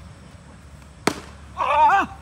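A single sharp crack of a cricket bat hitting the ball about a second in, followed by a short, high shout from a player.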